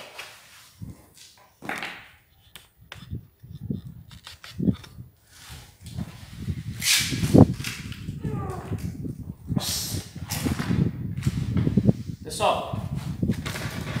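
Knocks, scrapes and low handling noise as a large porcelain floor tile is pried up off its bed of fresh mortar, with short sharp noisy bursts in the second half as it comes loose.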